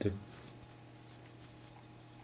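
Faint scratching and rustling of fingers handling a small cotton-padded gem box, over a steady low electrical hum.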